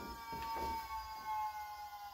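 Volvo electric power steering pump running at its lowest setting, giving a steady high whine that sags slightly in pitch, with a few faint knocks alongside.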